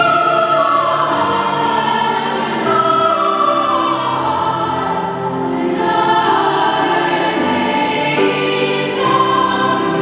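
Upper-voice choir of children's and women's voices singing with piano accompaniment, in sustained phrases whose melody falls twice in the first half.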